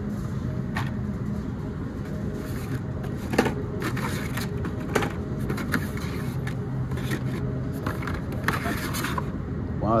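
Plastic blister-pack cards of Hot Wheels cars clicking and rustling now and then as they are flipped through and pulled from a cardboard display rack, over a steady low hum.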